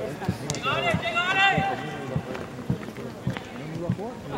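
A raised voice shouting a few indistinct words about a second in, then quieter voices, over a scatter of soft low knocks.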